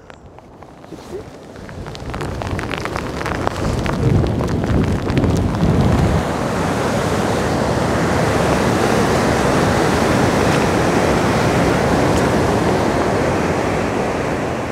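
Strong wind buffeting the microphone in driving rain, with lake water washing against the shore. The noise builds over the first few seconds and then holds steady.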